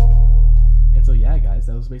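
The drums of a beat stop, and its held 808 bass note and a held chord ring on, fading out over about two seconds. A man's voice comes in about a second in.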